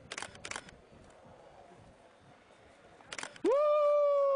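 Two sharp clicks just after the start, then about three and a half seconds in a loud, long, high-pitched held cry that rises at its onset and then holds one steady pitch.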